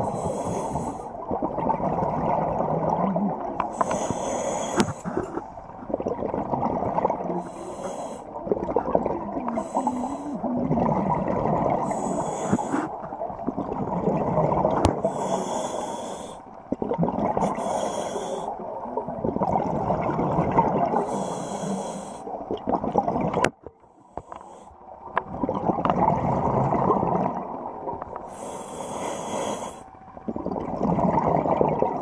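Scuba regulator breathing underwater: a short hiss with each inhalation, then a longer rumble of exhaled bubbles, about eight breaths a few seconds apart, with a short pause a little after the middle.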